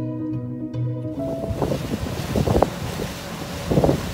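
Plucked-string background music that cuts off about a second in, giving way to wind buffeting the microphone and water rushing aboard a pontoon boat, with two louder gusts near the middle and the end.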